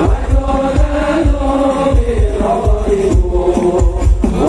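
Sholawat, Islamic devotional song: male voices chanting together in melody over a steady, driving drumbeat.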